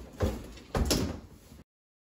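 Clothing rustling and rubbing in two rough bursts as a shirt is dragged off over the head, then cut off abruptly into dead silence.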